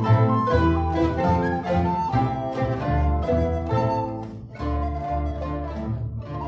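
Mandolin and guitar orchestra of mandolins, mandolas and guitars playing a passage of many quick plucked notes, with a brief drop in the sound about four seconds in.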